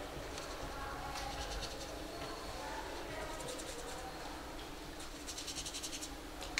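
Faint, indistinct murmur of distant voices in a large hall, with three short bursts of rapid, scratchy ticking, the last near the end.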